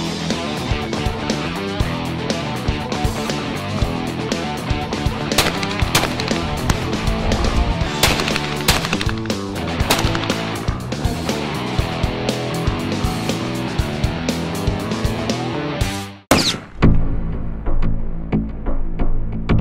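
Background music with a steady beat, with several sharp shotgun shots from a 20-gauge over-and-under sounding over it in the middle. Near the end the music breaks off briefly and a different tune begins.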